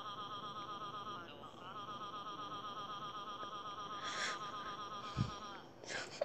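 Google Translate's synthetic voice reading a long run of Japanese 'a' characters: a rapid, buzzing chain of identical 'ah' syllables, broken briefly a little over a second in and stopping just before the end. A soft thump comes shortly after the middle.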